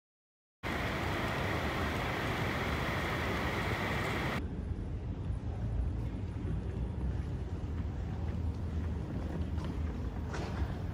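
Steady hall ambience of a near-empty airport terminal: a low rumble of air handling with handling noise from a handheld camera on the move. It starts after a moment of silence, with a hissier stretch for the first few seconds before the low rumble settles in.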